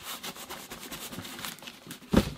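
Small cardboard mystery box shaken by hand, the boxed Funko Pop inside shifting with a quick run of soft rattles and scrapes.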